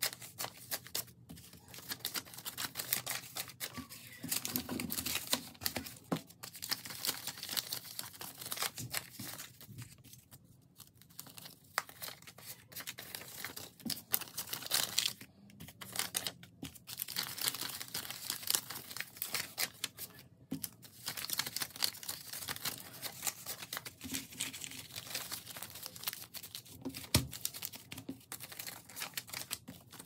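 Paper banknotes handled by hand: folded bills crinkling and rustling in a steady run of small crackles as they are straightened out and sorted into piles.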